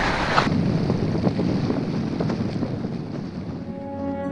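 Wind buffeting the microphone: a steady rushing noise that eases off toward the end, as music starts to come in.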